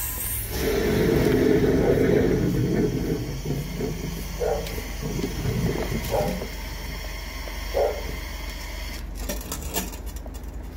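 High-pressure jetter working in a blocked drain line, forcing black, oily wastewater to gush and splash back out of the open riser pipe around the hose. The gushing is loudest in the first few seconds and then eases, over a steady low drone from the running jetter. The backflow is the sign that the line is still blocked.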